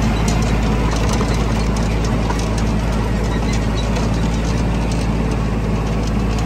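Farm tractor engine running at a steady speed, heard up close from the machine, a constant low rumble with an even hum and light rattling.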